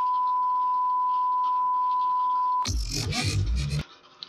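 A steady, pure high beep at one unchanging pitch: the standard test tone that goes with broadcast colour bars. After about two and a half seconds it stops abruptly and a loud, bass-heavy burst of sound follows for about a second.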